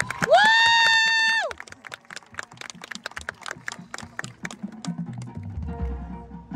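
Marching band show music: a loud held note slides up in pitch and holds for about a second, then the band drops to a quiet passage of light, scattered percussion clicks and taps.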